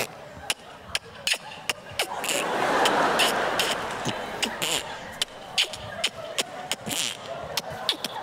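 A child beatboxing: a run of sharp mouth-percussion hits, roughly three a second. The audience applauds in a swell from about two seconds in until about five seconds.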